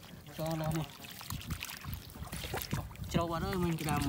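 Hands moving and picking in shallow water among grass, small faint splashes and trickles, with a person's voice giving two short vocal sounds, one about half a second in and one near the end.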